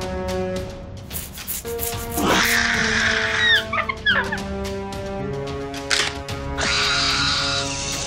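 Background film-score music with sustained held notes, overlaid by bursts of rustling, hissing sound effects and a few short squeaking pitch sweeps in the middle.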